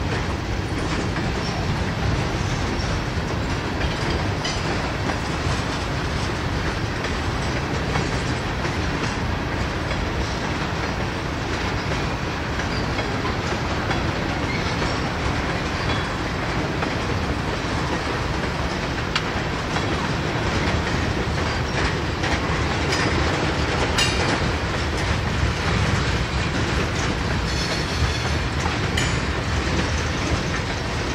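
Freight cars of a long mixed freight train rolling past: a steady rumble of steel wheels on rail, with the clickety-clack of wheels crossing rail joints.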